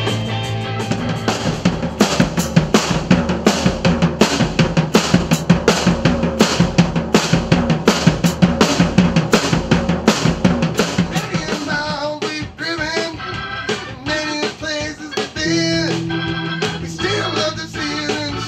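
A blues band playing live: a busy drum kit part of rapid hits drives the music over electric guitar and bass. About twelve seconds in, the drums thin out and a lead line with bending notes comes forward.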